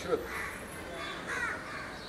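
A crow cawing twice, harsh calls about half a second in and again near a second and a half.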